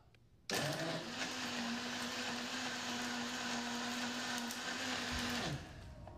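Electric blender switched on about half a second in, running steadily as it mashes rainwater, topsoil, snail shells, dried leaves and fish into a slurry. It is switched off near the end, its motor pitch dropping as it spins down.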